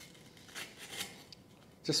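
A fork cracking into a crisp baked meringue shell: a few faint, dry crunches and scrapes.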